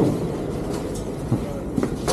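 Steady background hubbub of a fish auction floor, with faint voices and a few light knocks as trays are handled at the counter.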